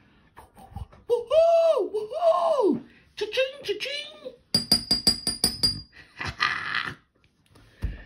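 A woman's voice making wordless, sing-song sounds with rising and falling pitch, celebrating a winning scratch-off number. About halfway through comes a quick run of high-pitched beeps, then a short breathy sound.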